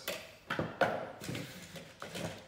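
A knife blade scraping through grasscloth wallpaper on the last stretch of a double cut. It is a scratchy rasp with two sharp clicks, about half a second and just under a second in.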